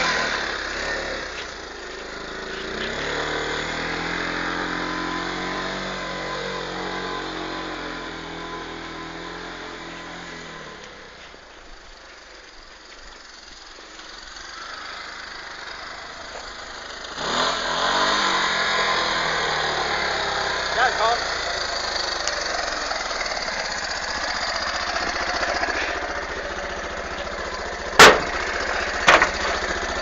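Kawasaki KLF300 ATV's single-cylinder four-stroke engine running as it drives, its note rising and falling, fading away about halfway through and coming back louder a few seconds later. Two sharp knocks near the end.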